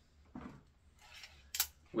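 Quiet handling sounds of a small pocket tape measure being picked up: a soft rustle, then a sharp click about one and a half seconds in.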